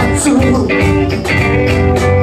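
Live rock band playing: electric guitars over a drum kit, loud and steady.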